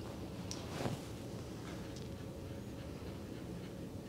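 Faint, scattered scratches and light taps of watercolor brushes working on paper, over quiet room tone.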